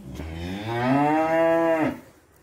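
A cow mooing: one long low moo that rises in pitch over its first second, holds steady, then stops abruptly.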